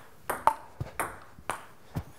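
Ping pong rally: the ball clicks off the paddles and the table, about six sharp clicks in two seconds at an uneven pace.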